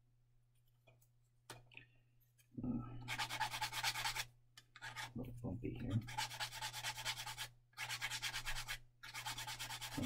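Sanding stick rubbed back and forth against a small plastic model part, cleaning up the sprue stubs after the part was cut from the tree. It starts a couple of seconds in and goes in quick strokes, in several runs with short pauses.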